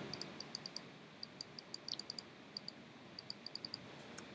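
Light, quick clicks of a computer mouse button, irregular and several a second, over faint room hiss.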